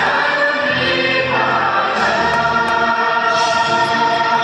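A choir singing an anthem in slow, long held notes.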